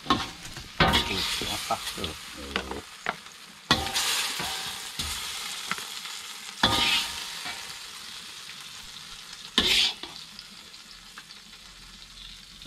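Chicken wings frying in hot oil in a steel wok, sizzling, while a metal spatula scrapes and clinks against the wok as the pieces are scooped out. The sizzle surges four times, about every three seconds, as the spatula turns and lifts the food.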